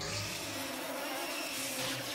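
Cartoon sound effect of a swarm of tiny glowing electric bugs, twittermites, flying loose out of a jar: a steady, noisy swarm sound, with background music underneath.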